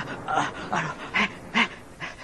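Rhythmic breathy panting, short breaths about two or three times a second.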